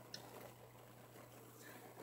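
Near silence: faint steady room hum, with one faint click shortly after the start as paper is pressed and handled.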